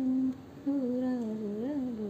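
A woman humming the tune of a Marathi children's song without words, in two held phrases with a short break about a third of a second in.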